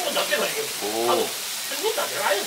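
Beef sizzling on a hot tabletop griddle, a steady crackling hiss, with a short voiced sound from a person about a second in.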